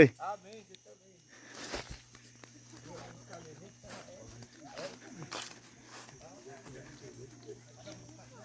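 Faint, indistinct talk from several people as they walk, with a few soft footsteps on grass.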